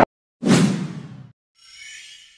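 Logo-reveal sound effects: a sudden whoosh about half a second in that fades out over about a second, then a fainter, high shimmering sound near the end.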